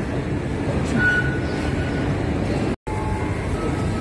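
Steady rumbling ambience of an underground railway station concourse, with a faint high tone for about a second. The sound cuts out completely for a moment near three seconds in.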